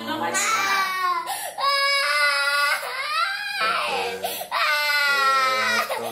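A young boy crying and wailing in about four long, high-pitched cries, each about a second, that rise and fall in pitch. He is in distress while blood is drawn from his arm with a butterfly needle.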